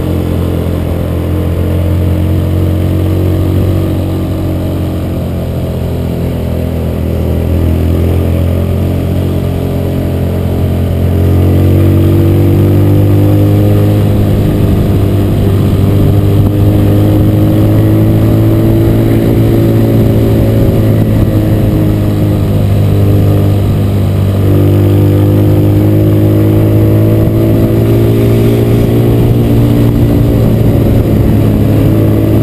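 Motorcycle engine running under load on an uphill ride, its note rising and falling with the throttle. It gets louder about eleven seconds in and stays there.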